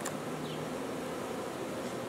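Honeybees from a captured swarm buzzing steadily around their box, with a brief click at the very start.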